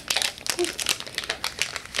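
A Nature Valley granola cups snack wrapper crinkling and crackling as it is pulled open by hand, in a quick uneven run of crackles.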